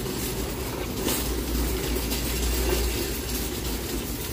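Wire shopping cart rolling across a hard store floor: a steady low rumble of its wheels and frame.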